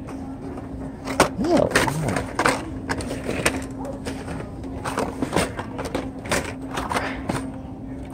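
Hot Wheels blister cards being flipped and knocked against each other on store pegs: irregular clicks and clacks of plastic and cardboard, over a steady low hum.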